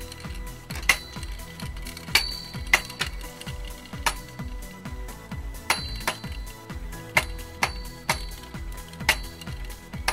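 A metal-rimmed toy spinning top (Top Plate) spins on the arena floor with irregular sharp metallic clicks, each with a short ring, as it knocks against the brick walls. Background music plays underneath.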